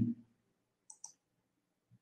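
Two faint, short clicks close together about a second in, during a pause in a man's speech.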